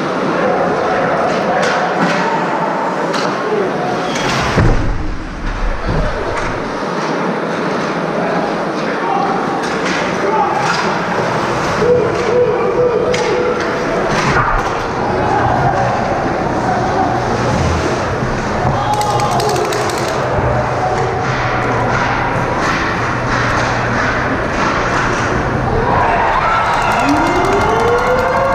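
Ice hockey game sound in an arena: steady crowd chatter with repeated sharp knocks from sticks, the puck and players hitting the boards. Near the end a goal siren starts up, rising in pitch.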